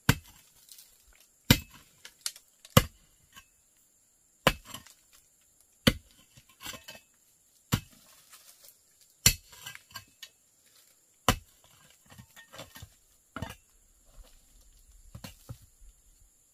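A metal hoe striking stony, gravelly soil over and over, about nine heavy blows one every second and a half. Between the blows come smaller clinks of stones and scraping.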